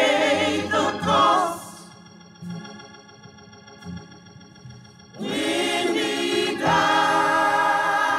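Gospel choir singing with organ accompaniment: a sung phrase with vibrato, then the organ holding a steady chord for about three seconds before the voices come back in, swelling to the full choir near the end.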